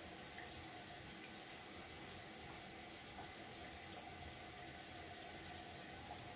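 Faint, steady running of a water tap into a bathroom sink.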